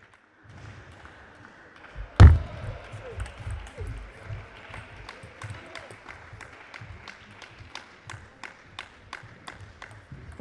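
Table tennis ball clicking against bats and table in a run of light, sharp ticks a fraction of a second apart, with one loud thump about two seconds in, over the low hum of a sports hall.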